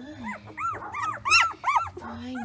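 Newborn puppies squealing and crying as they squirm and root to nurse, fussing at finding no milk: a quick run of about eight or nine short, high-pitched squeals, the loudest about a second and a half in.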